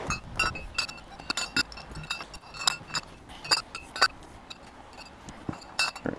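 Glass beer bottles clinking against one another as they are packed upright into a soft cooler: a series of short, ringing clinks at irregular intervals.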